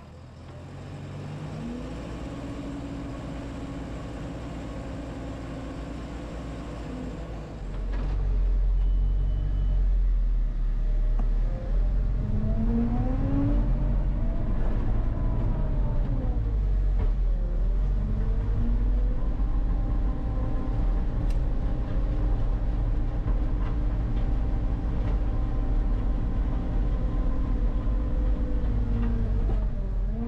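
Skid steer engine and hydraulics driving a Rockhound power rake attachment, heard from inside the cab. It runs at a lower speed at first, then becomes louder and deeper about eight seconds in, its pitch rising and falling several times as the machine works.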